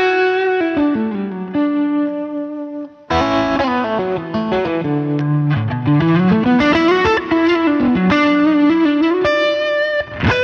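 Electric guitar played through a Line 6 HX Stomp dual-amp preset modelling a Fender Twin and a Matchless DC30, with a Tube Screamer overdrive in front for light drive. Sustained single-note lines with bends break off briefly about three seconds in, then come back with a lower phrase that slides down and climbs again.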